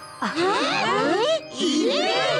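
Cartoon sparkle sound effect, a glittering tinkle for jewels shining inside a split watermelon, mixed with several children's voices exclaiming together in surprise in two outbursts, over background music.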